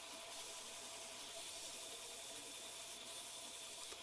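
Faint steady hiss of a belt grinder running at low speed with a fine-grit belt, sanding a small wooden inlay piece to shape.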